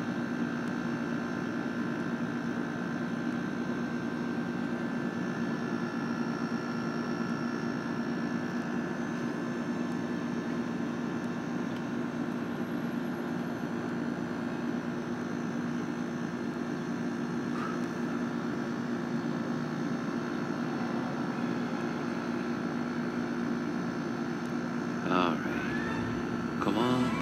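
A steady mechanical hum that holds one low pitch with fainter higher tones above it, unchanging throughout.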